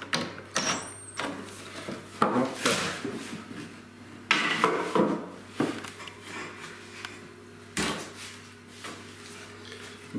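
Wooden parts of a pine table frame being handled and fitted together: several sharp knocks and clatters, spread unevenly, with quieter handling between them.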